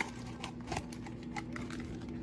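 Scattered light clicks and taps of small kitchen items and containers being handled, over a steady low hum.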